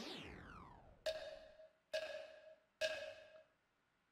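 Cartoon sound effects from an anime soundtrack: a falling pitched slide, then three pitched wood-block-like knocks about a second apart, each ringing briefly.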